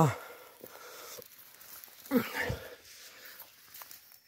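Quiet footsteps and rustling through grass and leaf litter, with faint small clicks, and one short man's vocal sound, falling in pitch, about two seconds in.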